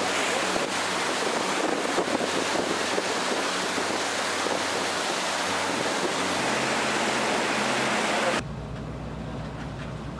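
Loud, steady rush of wind on the microphone and churning water from the wake of a charter boat running at speed across open water. About eight seconds in it cuts to a quieter, steady low hum of the boat's engine running slowly.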